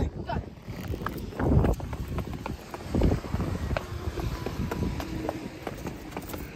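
Running footsteps on paving and concrete steps, irregular thumps with handling noise from a handheld camera, over wind rumbling on the microphone.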